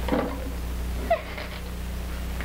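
A brief pitched vocal sound that glides down about a second in, with a short rustle or knock just before it, over a steady low hum.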